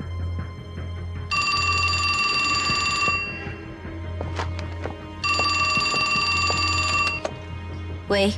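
Antique desk telephone's bell ringing twice, each ring about two seconds long with a two-second gap, an incoming call, over low steady background music.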